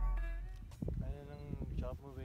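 The last held notes of background music fade out. Then a person's voice makes a drawn-out sound without words that wavers in pitch near the end.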